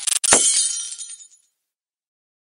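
Glass-shatter sound effect: a sharp crash near the start, then tinkling shards that fade out within about a second.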